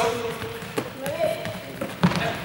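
Hands striking a ball as it is passed up from player to player: two sharp slaps, one just under a second in and one near the end, among players' voices in a sports hall.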